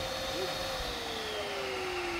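Electric inflator pump running steadily while it pumps up an inflatable dinghy's tube through a hose. Its hum slowly falls in pitch starting about a second in.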